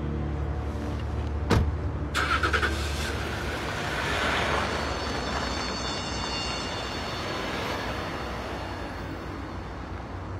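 A car door shuts with a thump, then a large SUV starts up and pulls away. Its engine and tyre noise swell and slowly fade as it drives off.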